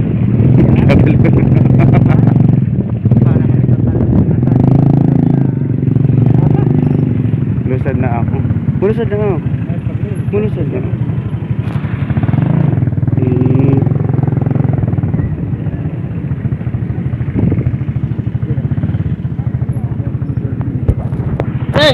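Small motorcycle engine running steadily at low speed, heard from on the bike itself, with people's voices around it.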